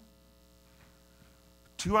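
A faint, steady electrical mains hum during a pause, with a man's voice resuming near the end.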